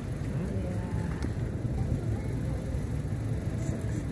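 Steady low rumble of road traffic, with faint murmured voices early on.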